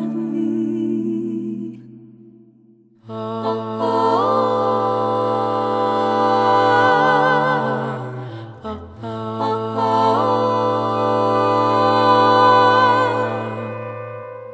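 Female vocal quartet singing a slow a cappella lullaby harmony in long held chords with vibrato, without clear words. The chord fades out about two seconds in, the voices come back a second later, and there is a short break just before the middle.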